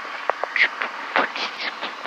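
Steady in-flight cabin drone of a Piper Saratoga II TC single-engine airplane in cruise, with a steady tone running through it. A few short clicks and brief noises come over the drone in the first two seconds.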